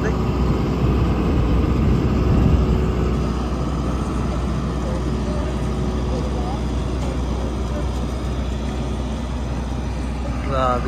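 Aircraft ground power cart's engine running steadily beside a parked airliner-size military jet: a constant low drone, slightly louder in the first few seconds. Faint voices of people nearby.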